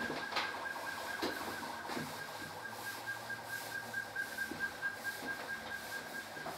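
A steady, faint high-pitched whine runs throughout, with a few light taps early and then soft, regular rubbing strokes of a sponge wiping a blackboard in the second half.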